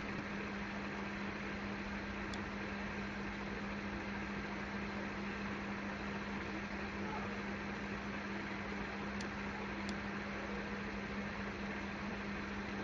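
Steady background hum and hiss picked up by an open microphone, with a low steady tone running under it and a few faint ticks.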